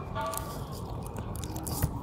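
Thin release film being peeled back from waterproof adhesive tape while fingers press the tape onto a metal roof sheet: irregular crinkling and scraping with a couple of brief squeaks.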